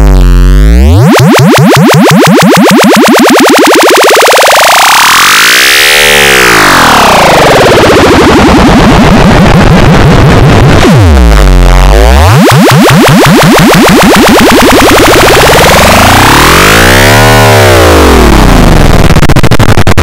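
Loud synthesizer jingle, heavily distorted by an effects filter: its pitch swoops down and back up in slow, wide arcs with a whooshing sweep, twice over.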